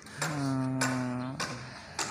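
A person's voice holding a drawn-out, level-pitched hesitation sound, an "uhh", for about a second, between two sentences of narration.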